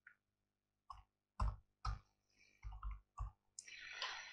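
Faint keystrokes on a computer keyboard, about seven irregular clicks as a component name is typed into a search field, followed near the end by a short breath.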